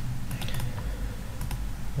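A few light clicks of a computer mouse opening folders in a file manager, over a low steady hum.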